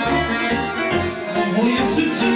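Live folk band music led by an accordion over a steady bass beat.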